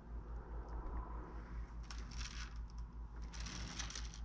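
Faint steady low hum, with two short soft scraping rustles, about two seconds in and near the end.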